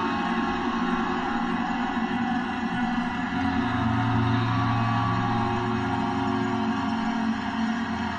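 Guitar-based kosmische space-ambient music: layered sustained chords ringing on, with a deep bass tone swelling in about halfway through and fading shortly before the end.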